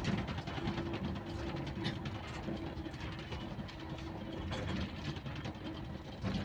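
A moving vehicle's engine running steadily with road noise, heard from on board: a continuous low rumble with a steady humming tone over it.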